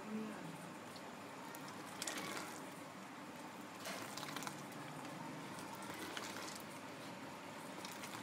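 Milk tea bubbling faintly at a boil in an aluminium pot, while a ladle pours it back into the pot in a stream, with brief louder splashes a few times.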